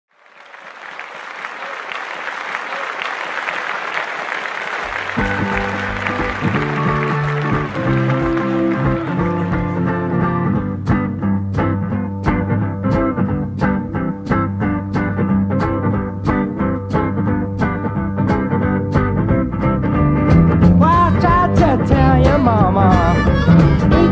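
Live blues band: a noisy, applause-like haze at first, then bass and guitars come in about five seconds in, a steady beat of about two strokes a second joins about halfway, and a harmonica enters near the end with bending notes.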